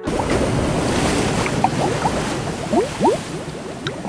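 Underwater bubbling sound effect: a steady rush of water noise with short rising bubble blips that come more often from about a second and a half in.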